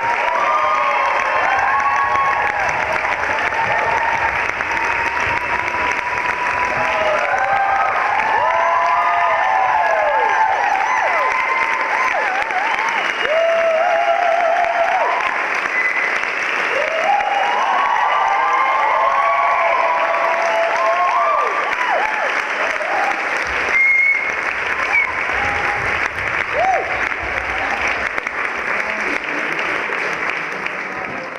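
A large theatre audience applauding steadily, with whoops and cheers from many voices over the clapping.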